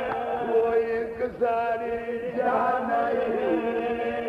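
A man's voice chanting a slow Shia masaib lament (mourning recitation for the martyrs of Karbala). He holds long, drawn-out notes that waver and bend in pitch, with a brief break just over a second in.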